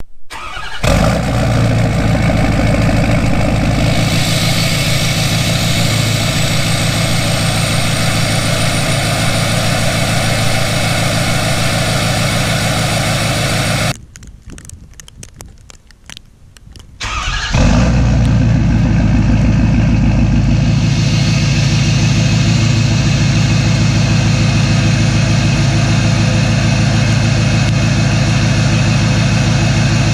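Pickup truck cold start through an aftermarket exhaust: the engine cranks briefly, catches and runs at a loud, steady idle with a faint high whine rising in pitch. About 14 seconds in the sound drops away for three seconds, then the engine is heard starting again and settles back into the same steady idle.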